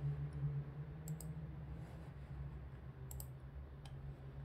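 A few short, sharp computer mouse clicks, a close pair about a second in, another pair about three seconds in and a single click near the end, over a steady low hum of room tone.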